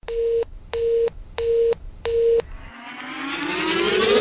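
Four evenly spaced telephone beeps, one steady tone each, like a phone busy signal. After them a rising synth tone swells steadily louder toward the song's entry.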